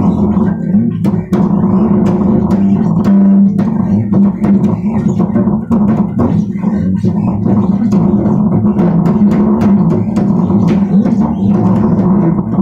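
Bass guitar played in a steady stream of plucked notes, with sharp string attacks on the strokes.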